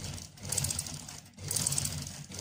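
Domestic sewing machine stitching through a folded velvet hem, running in rapid spurts with a short pause about halfway through.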